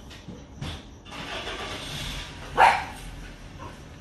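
A dog barks once, sharply, about two and a half seconds in, the loudest sound here, over a low background hiss.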